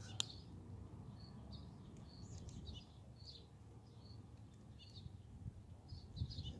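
Small birds chirping in short, high calls scattered throughout, over a faint low background rumble. A single sharp click sounds just after the start.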